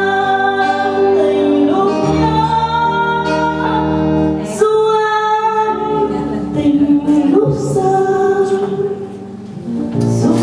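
A woman singing a Vietnamese ballad into a microphone with long held notes, over sustained instrumental accompaniment. She pauses briefly between phrases near the end.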